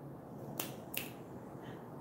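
Two short, sharp clicks about a third of a second apart, faint against quiet room tone.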